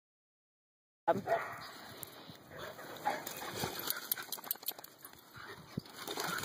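Silence, then about a second in, dogs at close quarters with a few short vocal sounds among scattered clicks and rustling.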